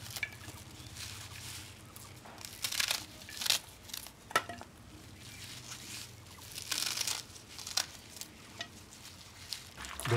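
Fresh leafy greens being torn and picked over by hand into a perforated aluminium colander: irregular crinkling rustles and small snaps, over a faint low steady hum.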